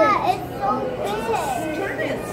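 Children's high-pitched voices and general visitor chatter, with no clear words.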